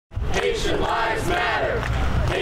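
A crowd of protesters chanting a slogan in unison, each line taking about two seconds. The sound cuts in abruptly at the very start.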